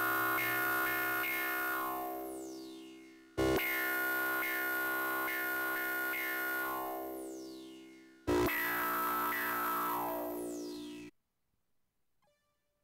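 Electronic synthesizer music. A sustained chord rings and fades, then is struck twice more about five seconds apart. Each time a high tone sweeps downward as it dies away, and the sound cuts off abruptly about a second before the end.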